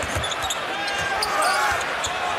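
Live NBA game sound in an arena: steady crowd noise with the basketball bouncing on the hardwood and a few short sneaker squeaks on the court.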